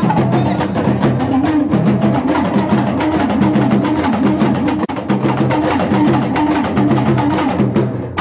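Fast, drum-driven dance music: dense rapid drum strokes over a repeating low melodic pattern, with a brief drop near the middle.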